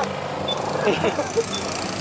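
Motorcycle engines idling steadily, with voices calling out over them and a short high beep about once a second.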